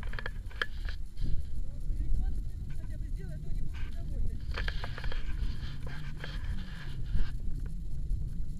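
Wind buffeting an action camera's microphone as a low, uneven rumble, with scattered clicks and rustles of paragliding harness buckles and straps being handled and fastened, and faint voices.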